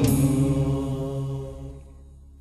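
Nasheed vocals: a sustained chanted note, held steady and fading away over the two seconds after the sung line ends.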